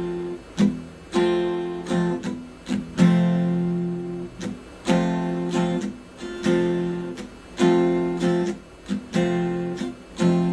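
Acoustic guitar strummed slowly in a repeating pattern: a ringing down strum, a muted down stroke that gives a short percussive chuck, then two up strums.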